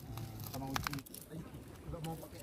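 Faint, quiet voices of people talking in the background, with a couple of brief sharp clicks a little under a second in.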